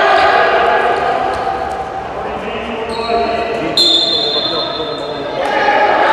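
A handball bouncing and players' shoes on a wooden sports-hall court, with echoing voices from the hall. A high steady tone sounds for about a second and a half past the middle.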